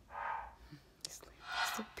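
Two airy breaths close to the microphone, about a second and a half apart, with a few faint clicks between them. A woman's voice begins at the very end.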